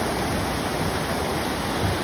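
Swollen creek in flood, brown floodwater rushing and churning through rapids: a steady, loud rush of water with no let-up.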